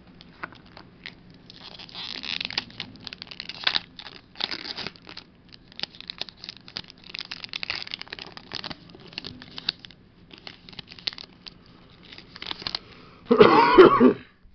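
Foil Pokémon booster pack wrapper being crinkled and torn open by hand, in irregular crackly bursts. A brief loud burst of the voice comes near the end.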